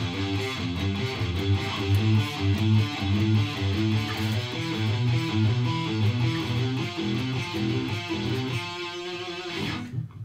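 Electric guitar playing suspended-chord arpeggios: single notes picked one after another, stepping through sus2 and sus4 shapes, with the last notes left ringing near the end.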